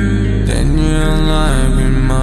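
Hip-hop song outro: sustained sung or synthesized pitched tones over a deep steady bass, with a chord change about half a second in.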